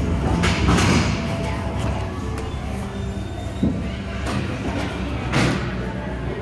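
Inline hockey rink ambience: a steady low hum of the hall with a few sharp knocks and thuds scattered through it.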